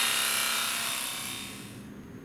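Electric tattoo pen buzzing steadily against a sedated dog's ear as it tattoos the dog's identification number, fading and stopping shortly before the end.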